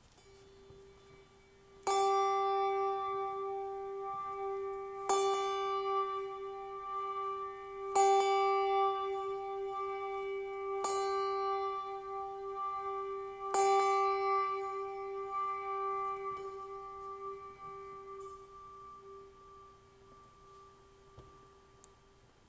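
A bell struck repeatedly at the start of the service: a soft first stroke, then about five stronger strokes roughly three seconds apart. Each stroke rings on at one pitch, and the ringing fades away over several seconds after the last one.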